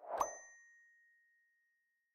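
Notification-bell 'ding' sound effect: a brief swish leads into a single bright ding that rings out and fades over about a second and a half.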